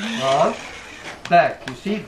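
Indistinct voice talking, with a couple of short clicks.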